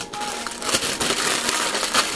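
Crinkling and rustling of a plastic packet being handled and worked open close to the microphone: a dense run of small crackles.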